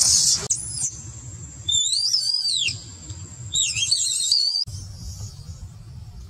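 Infant long-tailed macaque crying in distress: a series of shrill, wavering screams that rise and fall in pitch, the longest about a second each. They stop a little before five seconds in.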